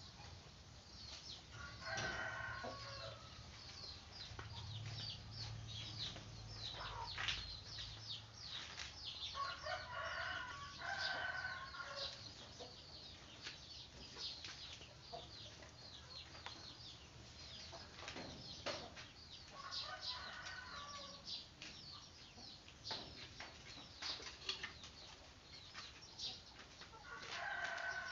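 Animal calls, each about a second long, heard four times over a steady crackle of short high ticks.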